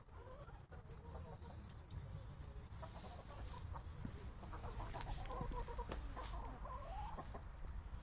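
Domestic hens clucking: short, wavering calls repeated throughout, busiest in the second half, over a low steady rumble.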